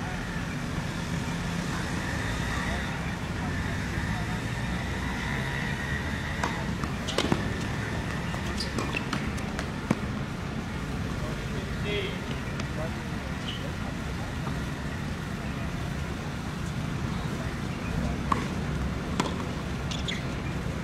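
Steady background rumble of traffic with indistinct distant voices, broken by a few isolated sharp knocks, typical of a tennis ball being struck or bounced on court. A faint steady high tone sits under it for the first several seconds.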